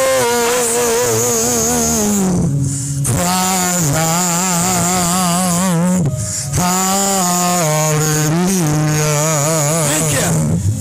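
A man singing solo into a handheld microphone in long held notes with strong vibrato. He breaks off briefly about two and a half and six seconds in.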